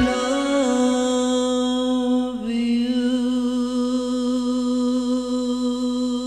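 A man's voice holding one long sung note with a slight vibrato over sparse backing music. The note breaks briefly about two and a half seconds in and carries on a little lower.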